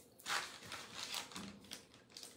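A plastic food wrapper crinkling and rustling as it is picked up and handled, in a string of short rustles.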